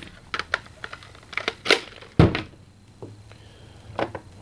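Plastic parts of a modified Nerf Titan shoulder launcher being handled as a barrel attachment is picked up and fitted: a scatter of light clicks and knocks, with one louder thump about two seconds in.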